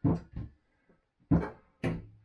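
Groceries being put away in a kitchen wall cupboard: four sharp knocks, each with a short ring, two close together at the start and two more in the second half.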